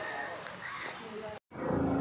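Indistinct voices talking, not clearly made out. The sound cuts out completely for a moment about one and a half seconds in, then comes back louder.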